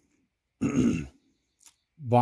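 A man clearing his throat once, a short rough sound just over half a second in, followed by a faint click.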